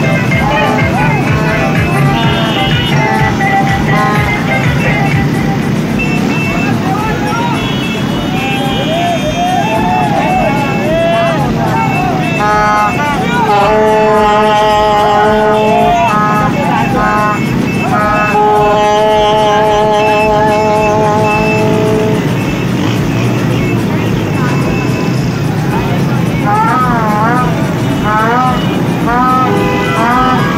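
Motorcycle engines running in a dense moving procession, with horns sounding long steady notes of a few seconds each, mostly in the middle, and voices shouting over the traffic.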